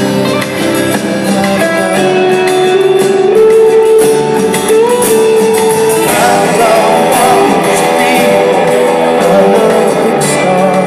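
A rock band playing live with acoustic and electric guitars and drums in a passage without sung words. A held melody note steps up in pitch over the first half, and the lead line grows busier from about six seconds in.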